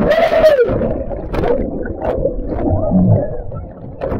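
Churning whitewater heard underwater: a rushing rumble of bubbles with gurgling tones that swoop up and down in pitch.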